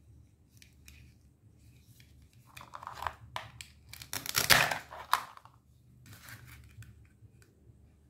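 Hook-and-loop fastener ripping apart as a plastic toy knife splits a toy cucumber on a plastic cutting board: a short rasp a few seconds in, then a louder, longer rip at about four and a half seconds. Light plastic clicks and handling come before and after.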